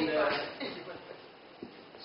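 Speech for about the first second, then quiet room tone with one faint click near the end.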